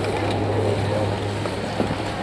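Steady low mechanical hum of a high-speed detachable quad chairlift's terminal machinery running, with a single sharp click near the end.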